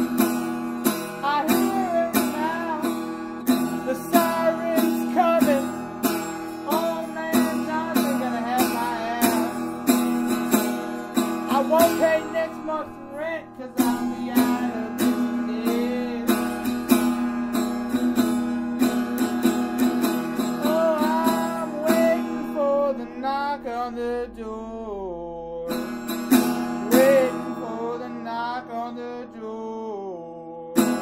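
Acoustic guitar strummed steadily, with a wavering wordless melody line over it. The strumming breaks off briefly about halfway and again near the end.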